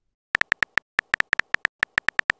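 Texting-app keyboard typing sound: a quick, irregular run of short identical electronic beeps, one per typed character, starting about a third of a second in.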